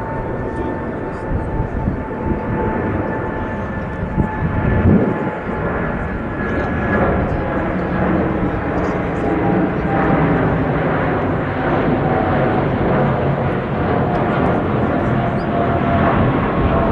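A passing aircraft's engines, a steady drone with a high whine that slowly falls in pitch, growing louder.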